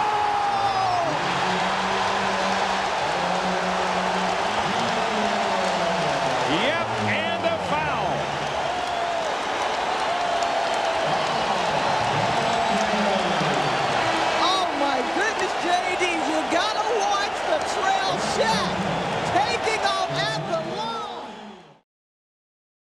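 Basketball arena crowd cheering loudly and steadily after a slam dunk, with held musical notes running through it; it fades out near the end.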